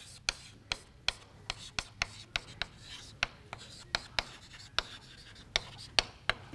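Chalk writing on a blackboard: irregular sharp taps and short scrapes of the chalk, two or three a second, as words are written out.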